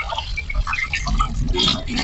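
Water from a kitchen tap running into a sink while dishes are washed by hand, with small knocks and clicks of handled items.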